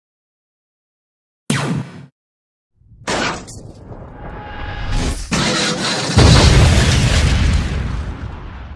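Animated sci-fi battle sound effects: silence, then a short burst about 1.5 s in. From about 3 s a beam weapon fires and strikes, building into a loud, deep explosion about 6 s in that rumbles and dies away.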